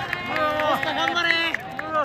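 A race commentator's voice calling the race over the racecourse public-address loudspeakers, with crowd noise behind.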